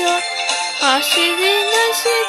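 A voice singing a Japanese pop song over a backing track, holding sung notes with a quick wavering dip in pitch about a second in.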